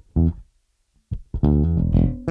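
Music Man Retro '70s StingRay bass with an ash body, plucked fingerstyle through an amp. A couple of short notes, a pause of about half a second, then a quick run ending in a held low note. The tone has a slightly dampened quality without any mutes in use.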